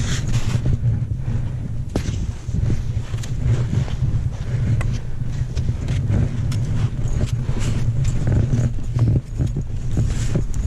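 Skis scraping and chattering through soft, chopped-up snow while skiing moguls, with frequent short knocks from ski and pole impacts. A steady low wind rumble on the microphone lies under it.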